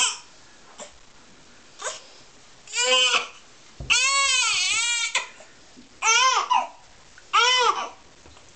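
Newborn baby crying: four wailing cries, each rising and falling in pitch, with short pauses between them; the second cry is the longest, about a second.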